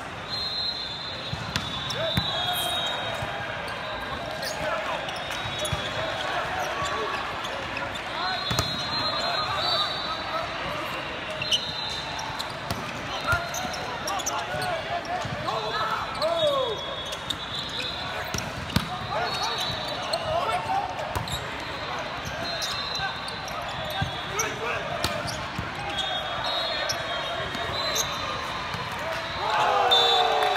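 Indoor volleyball play in a large, echoing hall: sharp slaps of the ball being struck and short high-pitched squeaks recur over a steady hubbub of voices. Players' shouts swell near the end as the rally finishes.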